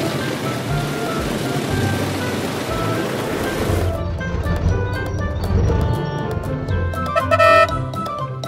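Cartoon sound effect of a heap of plastic balls tumbling out of a dump truck's tipped bed, a dense rattling rush that cuts off about four seconds in, over light background music; the music carries on alone afterwards, with a short brighter run of notes near the end.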